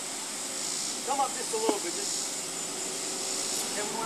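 Steady outdoor hiss, strongest in the high range, with a faint voice speaking briefly about a second in.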